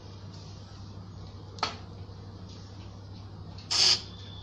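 A short hiss from an aerosol deodorant can near the end, sprayed at a single layer of mask fabric as a stand-in for a sneeze. A single sharp click comes about a second and a half in, over a steady low hum.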